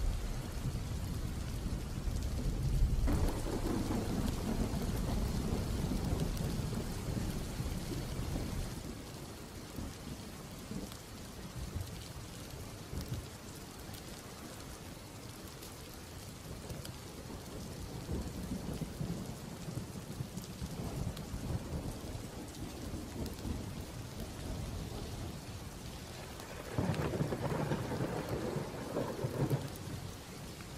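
Steady rain with rolling thunder: thunder rumbles through the first eight seconds or so, the storm eases to rain alone, then another rumble starts suddenly near the end.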